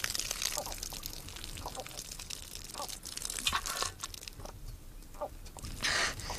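Water pouring and splashing from a waterskin, with a few short sounds of someone drinking from cupped hands.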